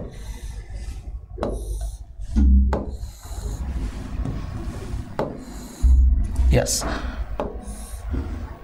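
Pen strokes rubbing and scratching across the surface of an interactive display board as lines are drawn, several short strokes in a row. Two dull low thumps, about two and a half and six seconds in, are louder than the strokes.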